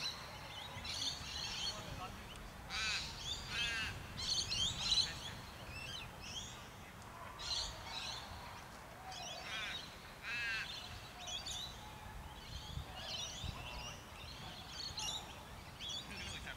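Birds chirping and calling all through, many short calls overlapping, with clusters of longer calls about three and ten seconds in.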